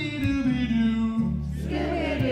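A man singing live into a microphone, holding one long note and moving into a new one near the end, over electric bass notes.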